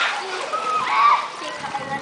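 Children's voices calling over water splashing and lapping in a swimming pool.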